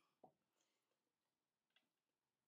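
Near silence: room tone with two faint short clicks, one just after the start and one near the end.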